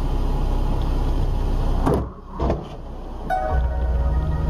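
Steady vehicle driving noise, the rumble of engine and road, which breaks off about two seconds in, followed by a short knock; near the end, music with held tones comes in.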